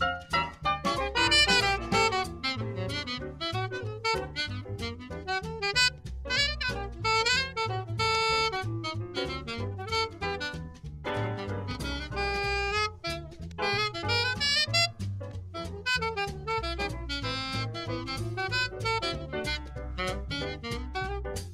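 Small swing-jazz combo recording: a saxophone plays the lead line over piano and a steady plucked double-bass pulse.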